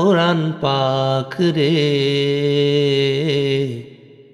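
A solo voice singing a Bengali Islamic song (gojol): a short gliding phrase, then one long held note with vibrato that fades out near the end.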